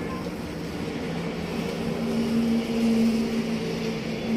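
A steady low engine-like hum that grows louder about two seconds in, over a faint hiss from a chain of burning matchsticks.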